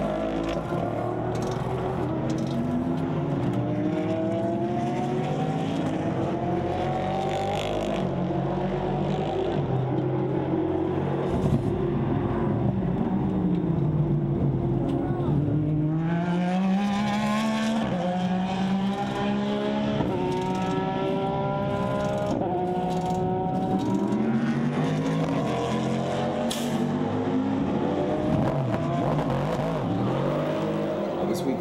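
Racing car engines rising and falling in pitch as cars brake and accelerate through the circuit, one after another, with a few short sharp clicks among them.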